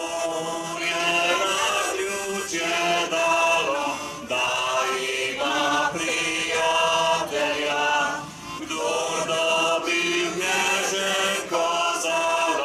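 A group of people singing an anthem together in slow phrases of held notes, with a man's voice leading into a microphone.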